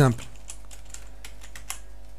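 Computer keyboard typing: a quick, uneven run of keystrokes.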